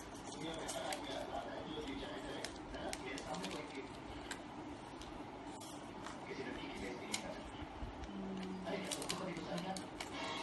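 Sheet of paper being folded and creased by hand, with short crinkles and taps against the table, over indistinct voices in the room.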